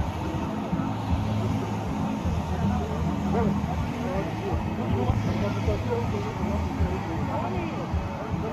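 Steady engine and road noise of a moving car heard from inside the cabin, with people's voices talking over it.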